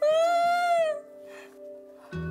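A single high-pitched, drawn-out whimpering cry, about a second long, from a woman starting to cry, over soft background music.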